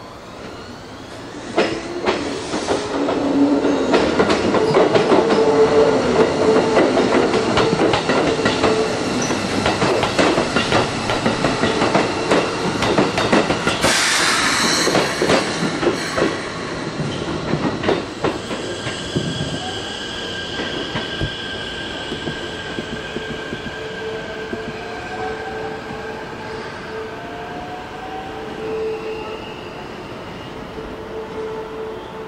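Keikyu Deto 11/12 electric works cars rolling slowly over switches and rail joints: a dense run of wheel clacks and clunks over the first half. About 14 s in comes a burst of high wheel squeal. Thin, steady squealing tones from the wheels on the depot curves follow in the later part as the cars move away.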